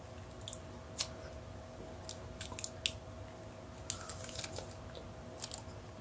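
Faint, scattered crackles and clicks of Kapton tape being unwound and wrapped around a 3D printer's thermistor and heater cartridge wires.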